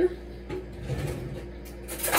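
Quiet kitchen room sound with a soft, low thump about a second in and a small knock before it.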